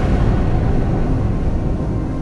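Closing theme of a TV news programme dying away: a deep, loud rumble left after the music's tones have faded, slowly getting quieter.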